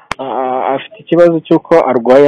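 A person speaking, starting just after the beginning, with a short break about a second in.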